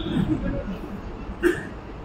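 A pause in a man's speech into a microphone: low background noise, broken by one short voice sound about one and a half seconds in.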